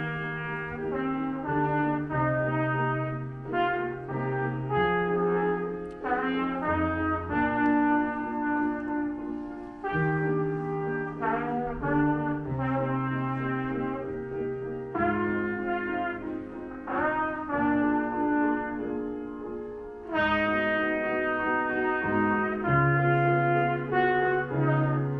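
Trumpet playing a melody of held notes in short phrases, with grand piano accompaniment underneath.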